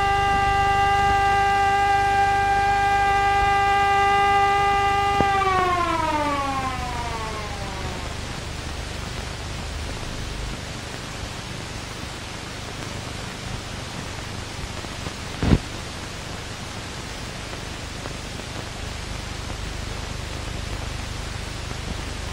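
Alarm siren sounding a steady tone that winds down and falls in pitch about five seconds in, fading out. After that, only the hiss of an old film soundtrack, with a single sharp pop partway through.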